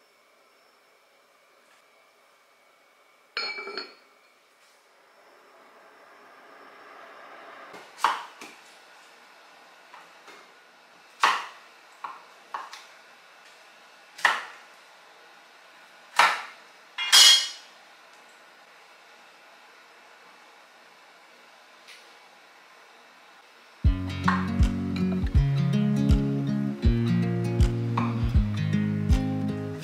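A kitchen knife chopping through kabocha squash on a wooden cutting board: about seven sharp, separate strikes over some ten seconds, after a single clink about three seconds in. Background music with a steady beat comes in near the end.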